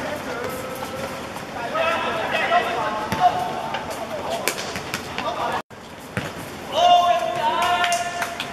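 Footballers shouting and calling to each other during play, with a few sharp knocks of the ball being kicked. Near the end one voice holds a long shout.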